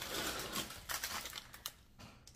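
Plastic packaging rustling and crinkling as a grocery item is pulled out of a bag, followed by a few light clicks about a second in.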